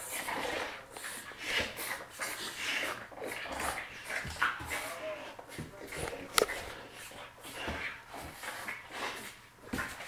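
A Boerboel and a French bulldog play-fighting, with irregular dog vocal noises and scuffling, and one sharp click about six and a half seconds in.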